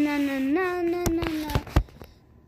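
A child's voice singing one long drawn-out note as a sung menace tune ('da-na, na'), ending about one and a half seconds in. A few sharp knocks follow, the loudest near the end.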